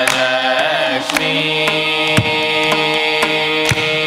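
Group of voices singing Carnatic music in unison, holding a long note, with violin accompaniment and regular mridangam strokes about every half second.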